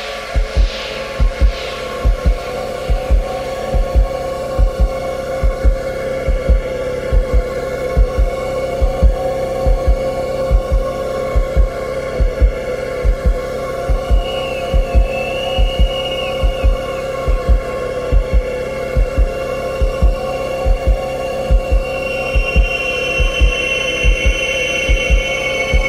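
Background music: a sustained droning chord over a low, regular thumping beat, about two thumps a second. Higher tones join near the end.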